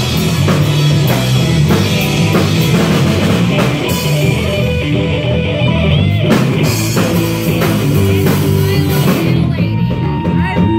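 Live rock band playing an instrumental passage: electric guitars, bass and drum kit, loud and heard close to the stage. Near the end the cymbals stop and a single held note rings on.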